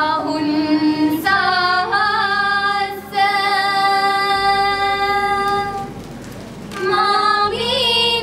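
Young female voices singing a slow song in long, held notes. The singing fades briefly about six seconds in, then comes back.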